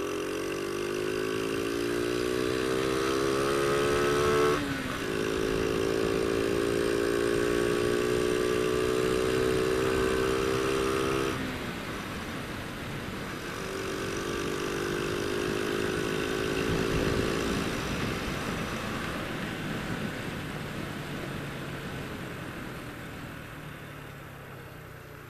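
Honda Astrea Grand's small single-cylinder four-stroke engine accelerating, its note rising for about four seconds. It shifts up into a higher gear and holds a steady high note. Around twelve seconds in the throttle closes, and the engine pulls again briefly, then fades as the bike slows, with wind rushing past throughout.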